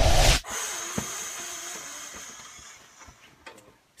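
A woman blowing a strong puff of breath into the microphone, imitating the big bad wolf blowing the house down; the puff stops about half a second in and a softer airy hiss fades away over the next few seconds.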